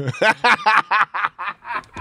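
Laughter in a quick run of short bursts.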